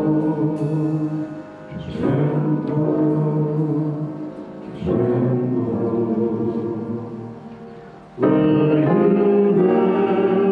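Church praise band and singers performing a slow hymn refrain in long held notes. Each phrase fades before the next, and the last one comes in noticeably louder about eight seconds in.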